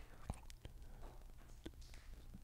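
Near silence: low room hum with a few faint, short clicks spread through the pause.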